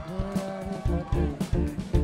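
Live rock band playing an instrumental passage between sung lines: drum kit keeping a steady beat with bass and electric guitar.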